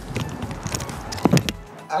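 Wind rushing over a bicycle-mounted camera as it rides along, with scattered rattling knocks and a brief vocal sound a little past a second in, over background music; the wind rumble stops just before the end.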